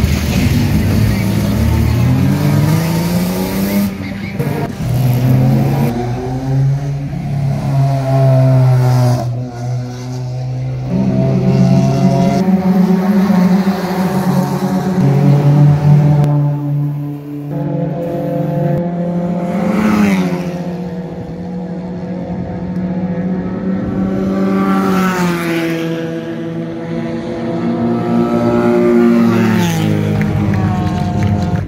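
Race car engines revving and accelerating, one car after another, the pitch climbing and dropping several times as they rev.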